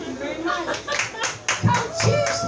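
Small audience clapping, a rapid run of hand claps from about half a second in, with voices over it.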